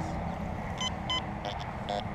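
Metal detector beeping: two short high beeps about a third of a second apart, then lower, shorter chirps near the end.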